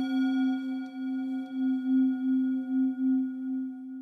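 A struck singing bowl ringing on in one long sustained tone, its loudness wavering in a slow, even pulse about twice a second.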